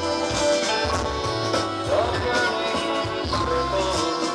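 Live band music: sustained melodic tones over pulsing bass notes and steady drum hits.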